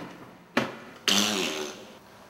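A man's stifled laughter in two breathy bursts: a short sharp one about a quarter of the way in, then a longer voiced one just after halfway that falls in pitch.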